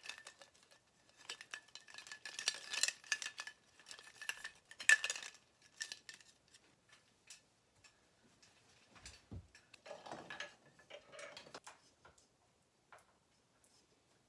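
Plastic skull-shaped string lights clicking and rattling against each other as the tangled string is pulled apart and handled, in irregular clusters of small clicks; a single dull thump about nine seconds in.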